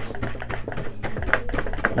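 A brush scrubbing dust off an old amplifier's circuit board, a quick, uneven run of scratchy clicks.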